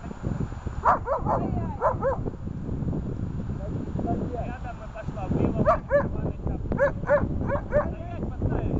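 A dog barking in two quick runs of short, sharp barks: a handful about a second in, then a longer string of them from about five and a half seconds.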